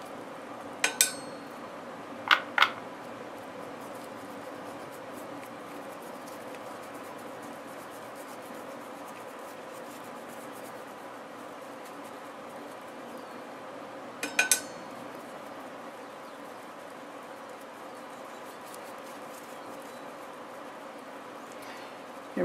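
Steady faint room hum broken by a few light, sharp clicks: one about a second in, two close together a little later, and a quick double click around the middle. These fit a paintbrush and hand knocking against a small pie dish while paint is brushed on.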